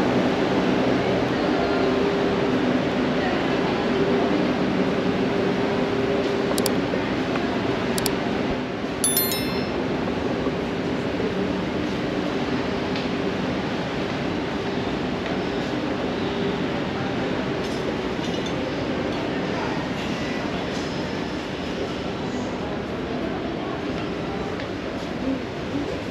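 Busy shop ambience: steady background chatter of shoppers over a low hum, with a few light clinks of glass or small hard objects between about six and ten seconds in.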